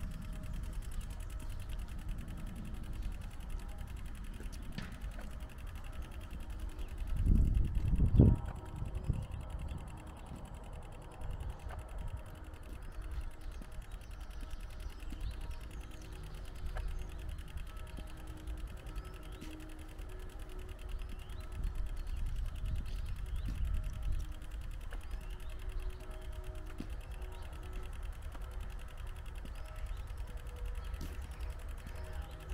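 Low rumbling noise on a handheld camera's microphone while walking outdoors, with a louder burst about seven to eight seconds in.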